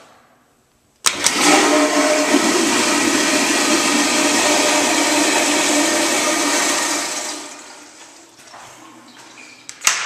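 Metcraft stainless steel toilet flushing. A click about a second in sets off a loud rush of water with a steady tone in it. The rush lasts about six seconds and fades out by about eight seconds. A sharp click comes near the end.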